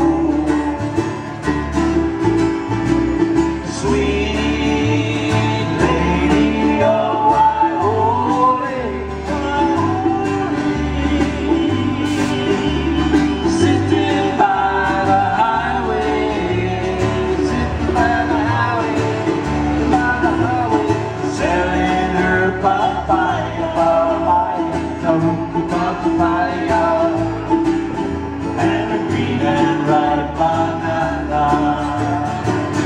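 Live acoustic Hawaiian band playing a song on guitar, 'ukulele and bass, with a bass line stepping under the plucked strings.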